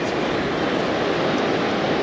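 Ocean surf and wind making a steady, even rush.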